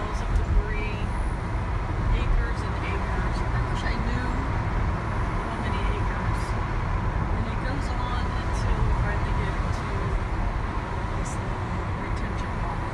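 Steady road noise heard from inside a moving car: a low rumble of tyres and engine under a faint steady whine.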